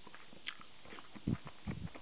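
Close-miked chewing of soft food, sushi roll and rolled omelette. There is a light click about half a second in, then a few soft, low, dull mouth thumps in the second half.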